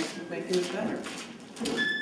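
Indistinct voices of people talking, with a brief high, steady note near the end.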